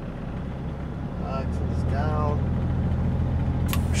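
Dump truck's diesel engine heard from inside the cab, a low steady drone that grows louder about a second in as the truck is put in drive and pulls away. A short, sharp hiss comes near the end.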